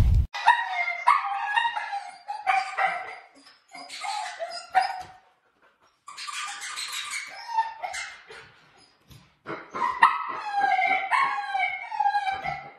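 Siberian husky vocalising in a run of short, high, pitch-bending whines and yips, in several bursts with brief pauses. A loud swishing transition sound cuts off just as it begins.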